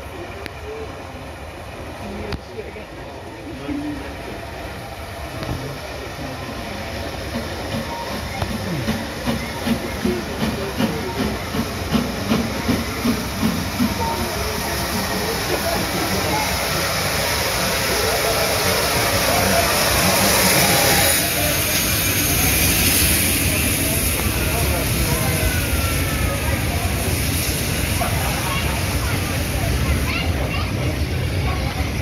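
GWR Castle class steam locomotive 7029 arriving: its exhaust beats come about two a second and grow louder as it approaches. About twenty seconds in a loud hiss of steam peaks as the engine passes, then the coaches roll by steadily.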